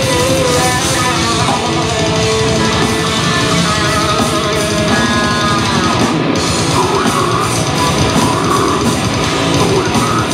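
Death metal band playing live: distorted electric guitars over drums at full volume.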